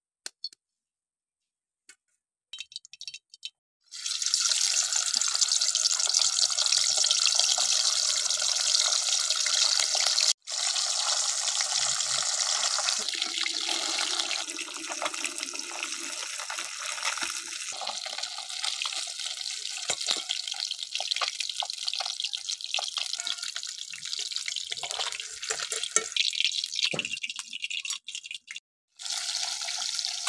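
Hot oil in a kadai sizzling loudly as turmeric-marinated small fish fry. The sizzle starts suddenly about four seconds in and cuts out briefly twice, near the middle and near the end.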